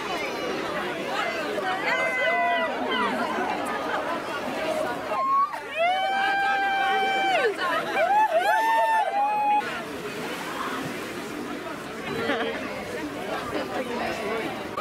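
Crowd of people chattering and talking over one another, with loud drawn-out calls from a few voices in the middle, then quieter babble for the last few seconds.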